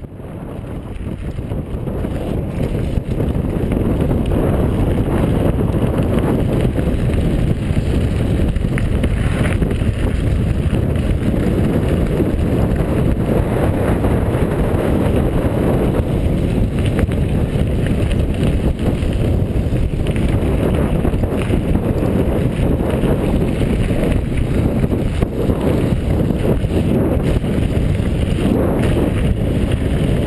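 Steady wind rush and rumble on the microphone of a camera riding a mountain bike down a dirt road, with small rattles from the bumpy surface throughout. It fades in over the first two seconds.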